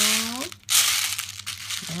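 Plastic BB pellets rattling and shifting in a plastic bowl as a hand digs through them, with the crinkle of plastic-wrapped candy, in two loud bursts with a short break about half a second in.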